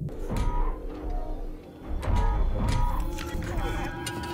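Film score from a TV episode's soundtrack, with a low rumble, short tones and scattered sharp clicks laid over it.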